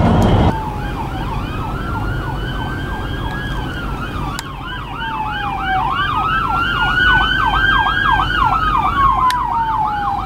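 Ambulance siren heard from inside a car: a slow wail rising and falling, with a fast yelp sweeping over it. A loud rush of road noise in the first half-second cuts off suddenly as the siren comes in.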